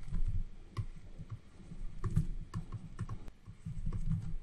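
Stylus tapping and scratching on a writing tablet during handwriting: irregular light clicks and soft knocks.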